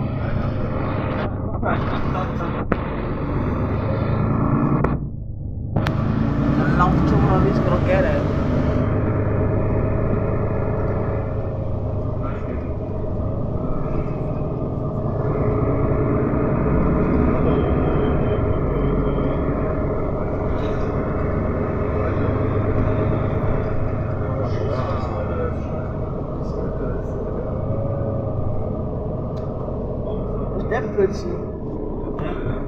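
Inside a moving city bus on wet roads: steady engine and road rumble with tyre noise, the sound briefly dropping away about five seconds in.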